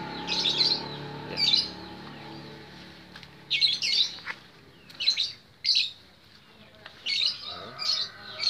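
Small birds chirping: short, high chirps in irregular bursts about every second, with brief gaps between them.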